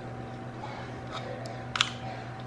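Small hard plastic clicks from GoPro camera-mount parts being handled and fitted by hand: a few faint ticks, then a sharp double click near the end, over a steady low hum.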